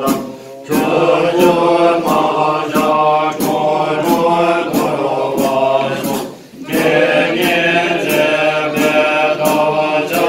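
A group of men chanting Tibetan Buddhist prayers in unison at a steady pitch, with a sharp tick about twice a second keeping time. The chant breaks briefly for breath just after the start and again about six seconds in.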